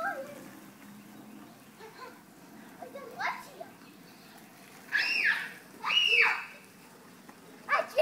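Young children squealing while playing: two loud, high shrieks about five and six seconds in, each rising and then falling, with shorter calls earlier. A faint steady hiss of lawn-sprinkler spray runs underneath.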